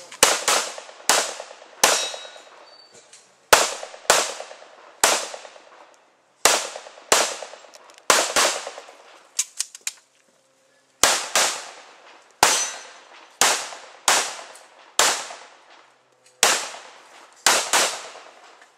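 Pistol shots fired in quick strings, often in pairs, about twenty in all with short pauses between strings. Each shot has a brief ringing tail.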